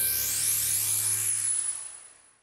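Short musical logo sting: a held chord with a deep bass note under a bright, shimmering high swell, fading away near the end.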